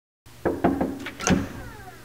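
Several sharp knocks on a door, then the door being pulled open with a short falling creak.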